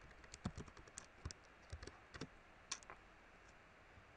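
Faint keystrokes on a computer keyboard: an irregular run of light taps as a word is typed, thinning out near the end.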